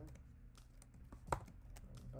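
Computer keyboard keystrokes: scattered key presses while typing code, with one louder key strike a little past the middle.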